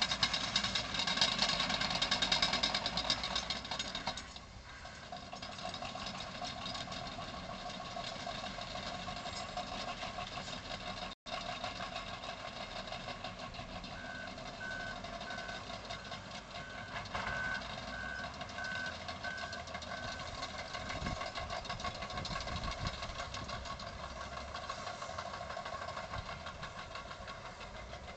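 Diesel engines of earthmoving machines (wheel loaders and a dump truck) running and working, loudest for the first few seconds. Midway a reversing alarm beeps steadily, about nine beeps over six seconds, as a machine backs up.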